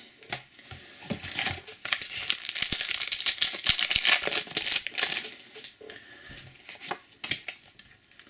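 Foil wrapper of a Topps Match Attax trading-card booster pack being crinkled and torn open by hand, a dense crackle lasting a few seconds from about two seconds in. Near the end come a few light clicks of card handling.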